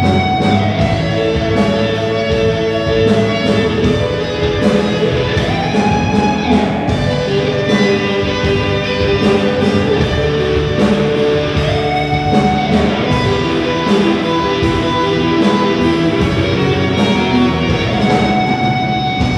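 A live rock band playing together: electric guitars and a drum kit in a steady groove, with a lead note sliding up in pitch twice.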